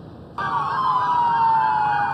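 Police car sirens wailing behind a slow-moving pursuit. They cut in suddenly about half a second in, and the pitch falls slowly.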